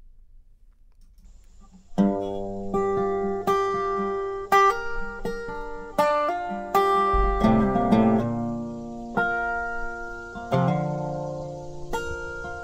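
Resonator guitar playing a song's intro, plucked chords and notes ringing out, starting about two seconds in after a quiet moment.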